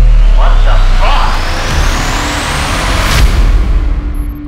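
Trailer sound design: a loud, rumbling build-up with a rising noise sweep and brief muffled voices, broken by one sharp hit just after three seconds.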